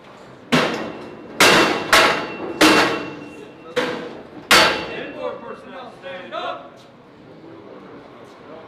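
Six loud, sharp metal bangs and clanks in about four seconds, one leaving a brief ring, as a file of paratrooper trainees stands up and moves off the benches in a mock aircraft trainer. Quieter clatter and voices follow.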